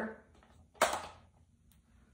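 A single short knock a little under a second in, as a vintage plastic water jug is set down on a cloth-covered table; the room is otherwise quiet.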